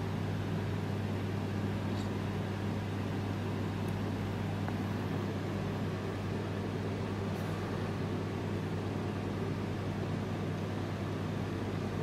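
Steady low hum with several fixed tones over an even hiss, unchanging throughout, with a few very faint ticks.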